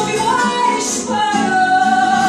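Live fado: a woman singing long held notes with vibrato, accompanied by guitar.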